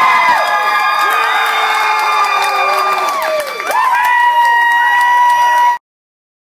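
Club crowd cheering, whooping and clapping for a band being introduced, with several long held whoops; the sound cuts off abruptly near the end.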